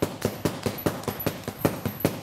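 An arnis stick striking a hanging Everlast heavy bag in rapid abanico (fan) strikes: sharp hits in an even rhythm of about five a second.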